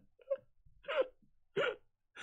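A man laughing hard in short, gasping bursts, three of them with brief pauses between.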